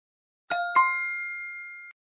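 Two-note chime: two bell-like dings struck about a quarter second apart, the second higher and louder, ringing on and fading, then cut off abruptly near the end.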